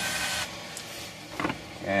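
Workbench handling sounds: a short hiss with a faint whine that cuts off about half a second in, then a single knock about a second and a half in as the cordless drill is set down on the bench.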